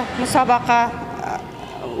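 A woman speaking in an interview. Her voice breaks off about halfway through into a short, quieter pause.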